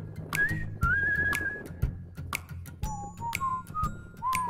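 Background music: a whistled melody over a light, ticking beat, the tune stepping down to lower notes about three seconds in.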